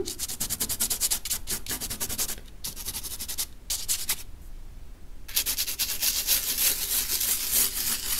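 Hand rubbing over dry watercolour paper, scraping off dried table salt crystals: a rapid gritty scratching in quick strokes, with a pause of about a second near the middle.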